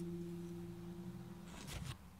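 Acoustic guitar's last note ringing and fading, stopping about three-quarters of the way through, then a brief rustle of handling.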